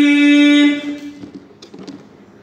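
A man's voice reciting the Quran in melodic tilawah, holding one long steady note on the last syllable of a verse that ends about three-quarters of a second in. A pause follows, with faint room noise and a couple of small clicks.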